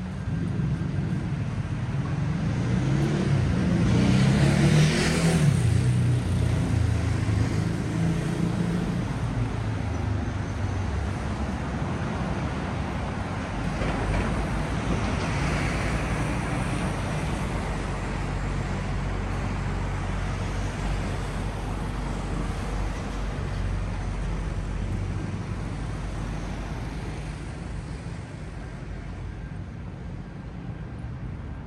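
Road traffic on the adjacent street, with a steady hum of engines and tyres. One loud vehicle passes about five seconds in, its rumble and tyre noise swelling and fading. A car passes more quietly around the middle.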